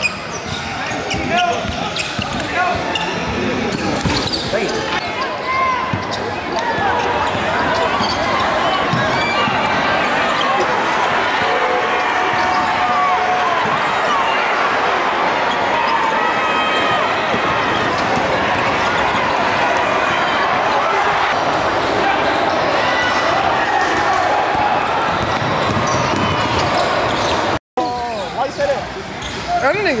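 Live basketball game sound: a ball dribbling on a hardwood court under a loud, steady background of crowd and player voices echoing in a gym. A brief dead gap from an edit cut falls near the end.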